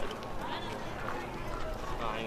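Indistinct voices of people talking in the background, over a steady outdoor rumble.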